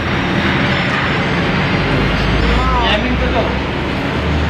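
A steady, loud roar with a low rumble, mixed with people's voices in the background.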